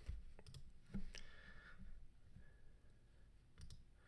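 A few faint clicks of a computer mouse: a couple about a second in and a quick pair near the end, over quiet room noise.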